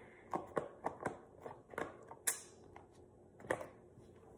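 Plastic food containers with red lids being handled and set down: a string of light clicks and knocks, one sharper than the rest a little past the middle.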